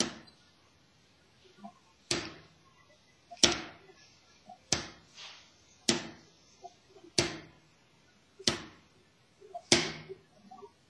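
Wooden drumsticks striking a snare drum in slow free strokes with alternating hands, each stick let bounce back up off the head. There are eight single hits, roughly one every 1.3 seconds, each ringing out briefly.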